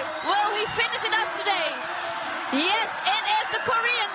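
Excited speaking voices that are not the English commentary, over a steady haze of crowd noise at the finish of an inline speed skating race.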